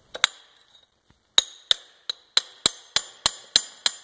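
A steel chisel chipping a plaster casting mold off a cast aluminium part: a couple of sharp clicks, then a steady run of ringing metallic taps, about three a second.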